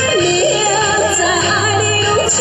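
Karaoke-style backing music for a Taiwanese pop ballad, played through a portable PA speaker, filling the gap between sung lines: a wavering melody line with quick notes over a steady low bass.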